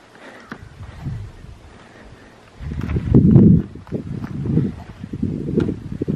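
Footsteps on a sandy beach path, heard as a run of low thuds about two a second that starts about two and a half seconds in; faint before that.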